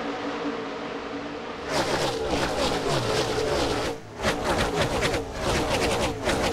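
Pack of NASCAR Cup stock cars' V8 engines at full throttle on a restart. First a steady drone from the approaching field, then from about two seconds in the cars pass close one after another, each one's pitch dropping as it goes by. There is a brief dip just after four seconds before more cars pass.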